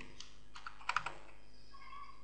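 A few light computer keyboard keystrokes, typing a value into a number field in the animation software.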